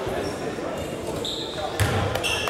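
Basketball game in a large gym: murmuring voices, a short sneaker squeak on the hardwood floor a little past halfway, then the basketball thudding once near the end as the free throw comes down.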